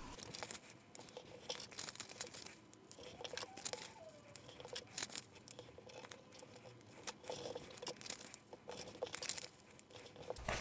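Sheets of printer paper being handled and folded in half on a wooden desk: intermittent crinkling and rustling, with light taps and scrapes as the folds are pressed down by hand.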